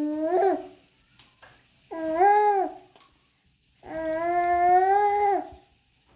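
Three long howling calls: the first is already sounding at the start and ends about half a second in, the second comes about two seconds in, and the longest runs from about four seconds in to five and a half. Each is held on one wavering pitch and drops at its end.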